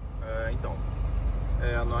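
Steady low rumble of a tractor-trailer's engine and road noise heard inside the cab while driving slowly, fading up at the start, with a man's voice speaking briefly twice.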